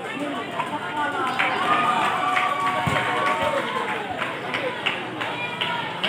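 Spectators' voices: many people talking and calling out at once, a steady babble.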